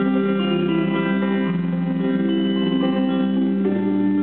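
Live band playing an instrumental passage: electric guitar over bass and drums, with no singing.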